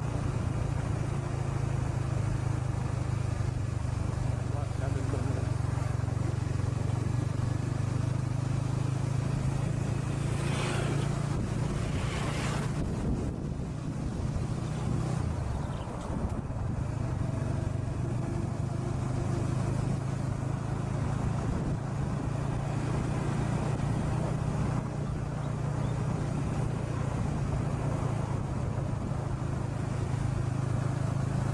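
A vehicle's engine running steadily as it travels, with wind noise on the microphone. Two brief whooshes come about ten and twelve seconds in.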